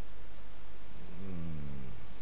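Steady microphone hiss and low hum, with a man's brief low hum, an 'mm', falling in pitch in the second half.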